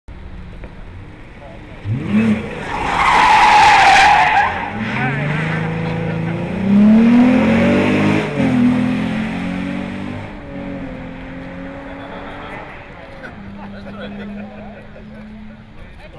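Dodge Avenger rally car driven hard, with a loud burst of tire squeal about three seconds in. Then its 300-horsepower Pentastar V6 revs up through several gear changes and settles into a quieter, steadier engine note near the end.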